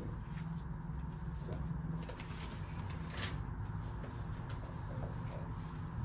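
Quiet room hum picked up by a handheld microphone, with a few faint clicks about one and a half and three seconds in.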